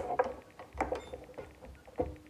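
Handling noise from a power supply brick and its cord being positioned in a plastic ammo can: a few light knocks and clicks with soft rubbing and scraping in between.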